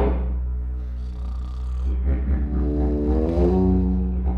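Improvised duet for didgeridoo and contrabass flute. The didgeridoo holds a continuous, pulsing low drone. Over it, sustained breathy flute notes glide upward in pitch about three seconds in.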